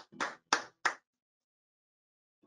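Hand claps over a video call, about three a second, stopping about a second in, after which the sound cuts to dead silence.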